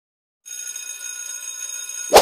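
A steady, high ringing sound effect of several held tones, starting about half a second in after a moment of silence.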